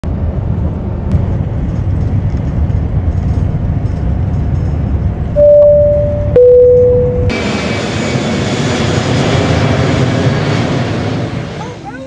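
Low steady rumble of a vehicle in motion. About five seconds in comes a loud two-note airliner cabin chime, a high note then a lower one. From about seven seconds the sound switches to a steadier, brighter rush of aircraft cabin noise.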